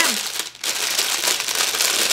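Plastic packaging bag crinkling and rustling as it is torn open and handled by hand, with a short lull about half a second in.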